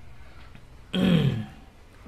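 A man clears his throat once, a short rasping vocal sound about a second in with a falling pitch, against a quiet background hum.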